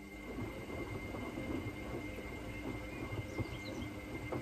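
Zanussi front-loading washing machine tumbling a sudsy wash load. The drum turns with a low rumble and irregular soft knocks as the wet laundry drops and sloshes, over a steady high whine from the drive motor.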